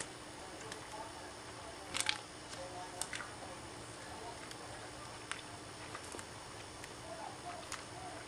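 Quiet room with a few faint short clicks of hands handling a gum wrapper pressed onto the skin of a forearm, the loudest about two and three seconds in.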